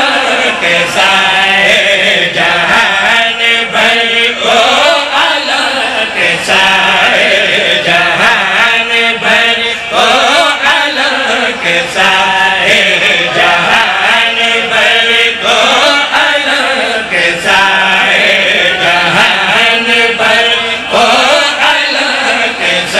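Men's voices chanting a devotional recitation together into microphones, a lead voice with others joining, loud and unbroken.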